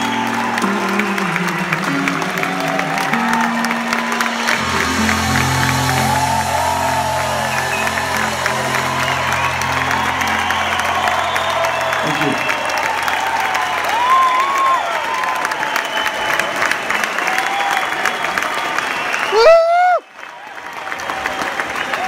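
The band's last held chords ring out and fade over about twelve seconds while the arena audience applauds and cheers, with whistles. Near the end a loud rising whoop sounds close to the microphone, then the sound briefly cuts out.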